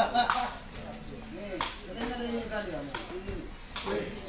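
Two sharp cracks of a sepak takraw ball being kicked, about a second and a half apart, over crowd voices.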